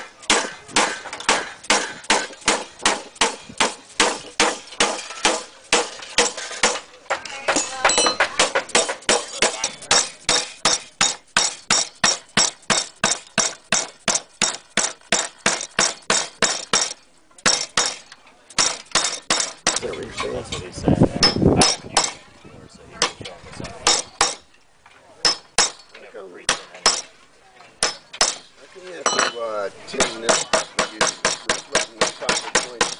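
Rapid mallet blows on copper roofing sheet, about three a second, flattening the folded edges of a flat-lock seam; the blows pause briefly about two-thirds of the way in, and near the end a steel claw hammer takes over, striking the copper.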